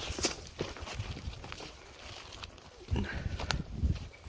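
Footsteps of a walker on a sandy bush track: a series of steps with sharp clicks roughly once a second and low thuds underfoot.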